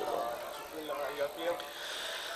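Faint murmur of voices, with short broken snatches of low speech and no clear words.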